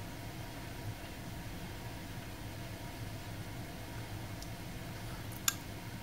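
Heat pump air handler's blower running with a steady low hum, and a single sharp relay click about five and a half seconds in as the emergency backup strip heat is called on.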